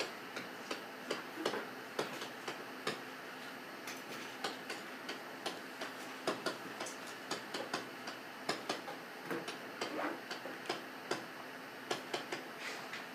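Sharp, unevenly spaced taps and clicks of a pen or stylus on a writing surface as words are handwritten, about two or three a second, over a steady faint room hiss.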